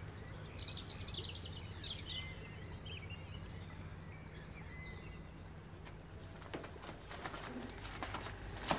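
Songbirds chirping, with a short trill, faint over a steady low hum; a few faint clicks near the end.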